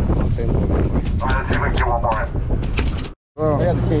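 Steady low rumble of a sportfishing boat's engine, with wind on the microphone and voices on deck. The sound drops out for a moment shortly after three seconds in.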